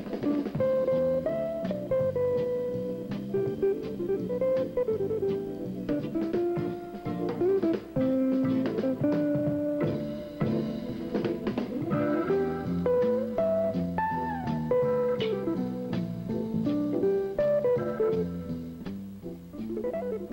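Background music: plucked guitar notes carrying a melody over a bass line.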